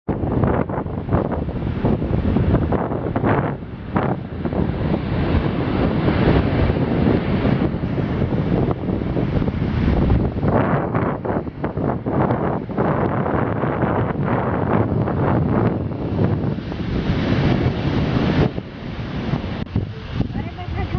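Strong wind buffeting the microphone in uneven gusts, with the rush of surf beneath it.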